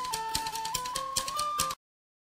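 Background music: a high stepping melody over a fast rhythm of percussive hits, cutting off abruptly near the end.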